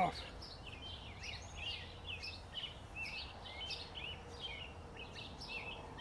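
Small birds chirping repeatedly, several short rising and falling chirps a second, over a faint low rumble.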